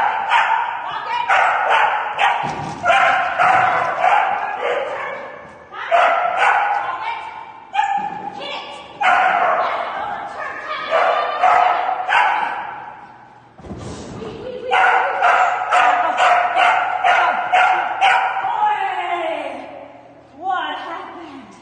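A dog barking over and over in quick runs of short barks, echoing in a large indoor arena, with a dull thump about three seconds in and another near the middle.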